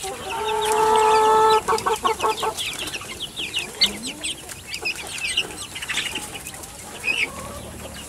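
A pen of young chickens peeping and clucking: one loud, drawn-out call lasting about a second near the start, then many short, high, falling peeps scattered through the rest.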